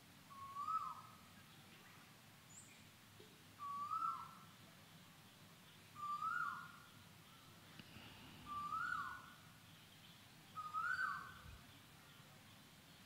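A bird calling: the same short two-note call, a low note then a higher one dropping away, repeated five times about every two and a half seconds, each a little higher than the last.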